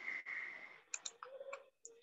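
A soft breathy hiss, then a handful of faint, sharp clicks, heard over a video call microphone.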